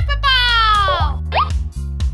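Upbeat children's cartoon music with a steady bass line. Over it, a high cartoon voice slides downward for about a second, followed by a quick rising cartoon sound effect.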